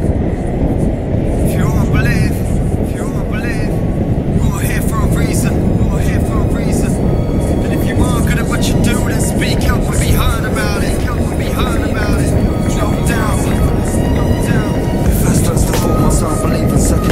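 Wind rushing over the microphone of an action camera on a speed skater in motion, with the rumble of inline skate wheels rolling on asphalt. Short high chirps sound over it from about two seconds in.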